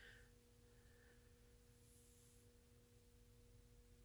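Near silence: room tone with a faint steady hum of two pitches, one an octave above the other.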